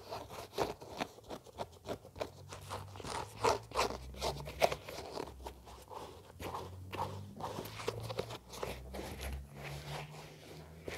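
Sneaker handled close to the microphone: fingertips tapping and scratching on the shoe and fiddling with its laces, in a busy, irregular run of small taps and crackly scrapes.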